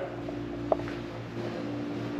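A steady low hum, with a single short click about three-quarters of a second in.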